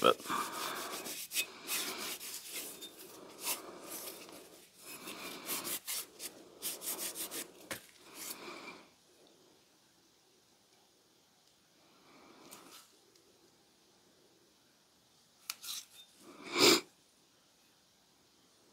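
A cloth rag wiping oil over a steel Snow & Nealley axe head held in gloved hands: a quick, scratchy back-and-forth rubbing for about the first nine seconds, which then stops.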